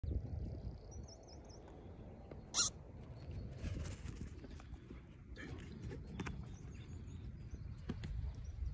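Wind rumbling on the microphone, with a small bird twittering faintly twice. One short, sharp, loud sound comes about two and a half seconds in.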